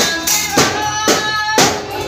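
A man singing into a handheld microphone over amplified backing music with a steady beat of about two strokes a second and jingling percussion.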